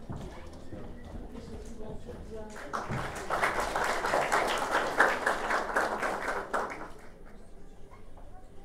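Audience applauding, starting about three seconds in and dying away about a second before the end, with low talk before it.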